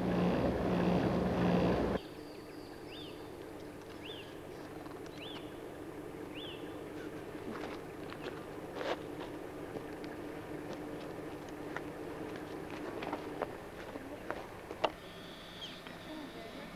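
A loud steady rumble that cuts off abruptly about two seconds in, giving way to quiet bush ambience. In it a bird gives four short, high, rising-and-falling chirps about a second apart, followed by scattered faint clicks.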